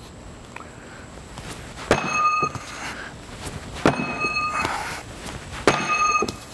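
Steel throwing spike knocked three times about two seconds apart, each a sharp clank followed by a brief bell-like metallic ring.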